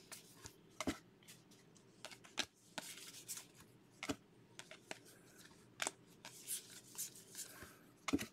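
Faint handling of a stack of 2020 Bowman baseball cards flipped through by hand. Soft slides of card on card, with a sharper little snap about every one and a half seconds as a card is pulled off the stack.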